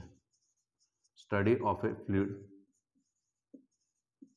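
Marker pen writing on a whiteboard, faint scratchy strokes. A man's voice speaks briefly in the middle, louder than the writing.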